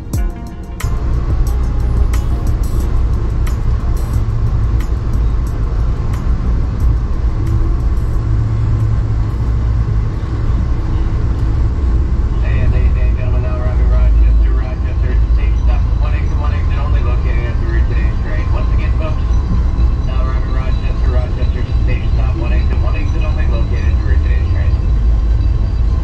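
Loud, steady low rumble of a moving Amtrak passenger train, heard from inside the car, with sharp clicks in the first several seconds. Indistinct voices can be heard from about halfway through.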